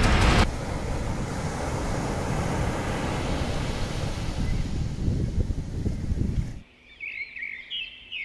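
Background music cuts off, giving way to steady rumbling ambient noise for about six seconds. Near the end the noise drops away and birds chirp several times.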